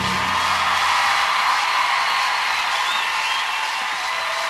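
Final chord of the music dying away about a second in, under a studio audience cheering and applauding, with a few whoops and whistles.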